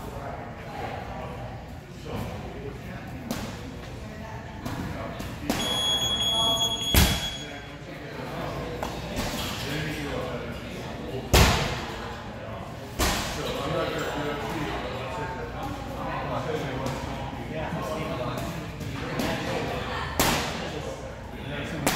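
Three sharp thuds echoing in a large hall, spaced a few seconds apart through the middle, over steady background voices talking; a brief high-pitched tone sounds just before the first thud.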